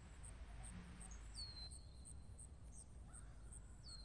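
Faint forest ambience: a high-pitched insect chirp repeating about three times a second, with a bird's short falling whistle twice, over a low background hum.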